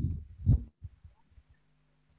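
Muffled low thumps and throbs over a video-call line, then a faint steady low hum: a participant's voice coming through an earphone microphone so muffled and quiet that no words come across.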